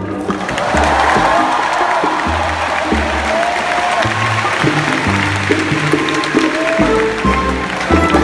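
Audience applause breaking out and swelling over the first second, over a Latin jazz band that keeps playing its bass line and conga groove underneath.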